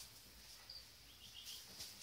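Near silence: room tone with a few faint, high, quick chirps a little past the middle, like a small bird calling in the distance.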